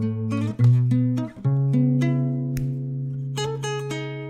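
Acoustic guitar playing a short plucked single-note fill: a few quick notes, then one note held and left ringing for about two seconds, then a quicker run of notes near the end.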